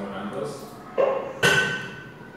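Computer quiz game's sound effect: two sudden notes about half a second apart, the second a bright ringing chime that fades, as the game answers an entry with a smiley face.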